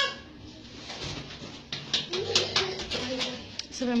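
Voices: a short high call at the start, then low murmured talk, with several sharp clicks and knocks in the middle.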